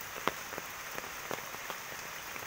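Rain falling, with scattered drops ticking sharply on nearby surfaces over a steady hiss.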